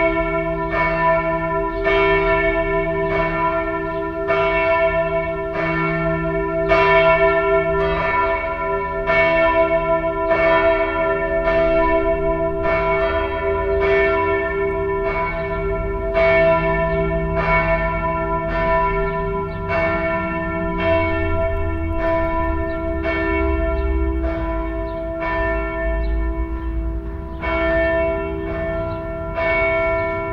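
Church-bell ringing from Växjö Cathedral: swinging bells struck about once a second, each strike's ringing hum running on into the next.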